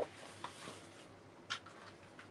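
Faint rustle and light taps of a sheet of patterned scrapbook paper being moved and laid flat on the work surface, the clearest tap about one and a half seconds in.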